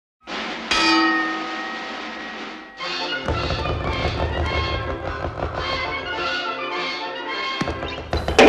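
A boxing-ring bell clangs once about half a second in and rings out for about two seconds. From about three seconds in, music with a steady beat plays.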